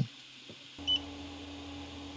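A single short, high electronic beep about a second in, typical of the 3D printer's touchscreen acknowledging a button press, followed by a faint steady low hum.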